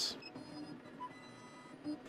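Faint short whirs and tones from the stepper motors of a Thunder Laser BOLT CO2 laser engraver as it runs its autofocus, with a brief tone about a second in.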